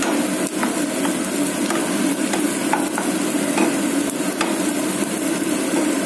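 Sliced onions and green chillies sizzling in oil in a non-stick wok, stirred with a wooden spatula that knocks and scrapes against the pan in short irregular clicks.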